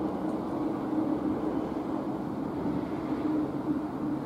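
Steady motor-vehicle engine hum with a low drone underneath, holding level throughout.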